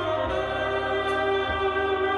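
Slow live dark jazz: held, choir-like chords over a low bass, with a single soft stroke on the drums about one and a half seconds in.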